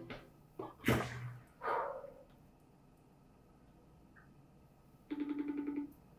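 The tail of the music fading out, then a few sharp knocks and a brief scraping or rustling sound in the first two seconds. After a quiet stretch there is a short pulsing buzz with a steady pitch, under a second long, near the end.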